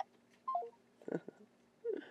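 A phone's short electronic tone stepping down in three notes about half a second in, as a phone call ends; a quiet "bye" follows.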